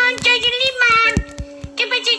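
A high-pitched, childlike cartoon voice singing over background music, breaking off a little past halfway and starting again near the end.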